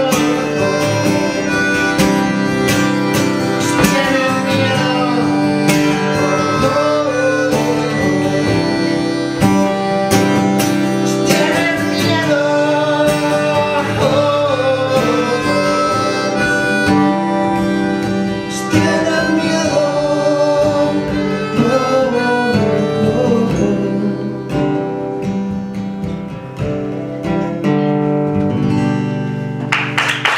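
Acoustic guitar strummed steadily with a harmonica playing the melody over it, performed live as a folk duo.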